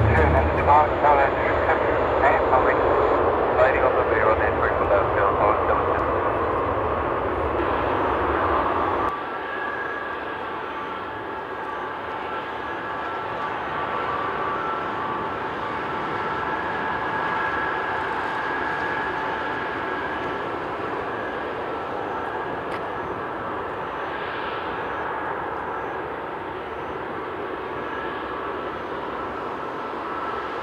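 Airbus A380 jet engines (Rolls-Royce Trent 900s): a loud roar as the aircraft climbs overhead for about nine seconds. Then, after a sudden cut, comes the quieter, steady whine of the engines at low power as it taxis.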